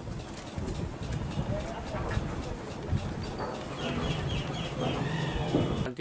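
Birds calling over steady background noise, with a quick run of repeated high chirps in the second half.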